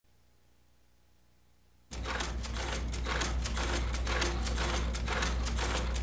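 Near silence for about two seconds, then a computer keyboard being typed on quickly, a rapid, irregular run of clicks over a steady low hum.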